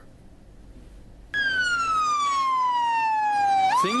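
Fire engine siren wailing, starting suddenly about a second in. Its pitch falls slowly through one long sweep, then rises quickly near the end.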